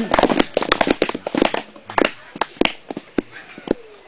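A small group clapping, mixed with laughter at the start; the claps come irregularly and thin out over the last second or two.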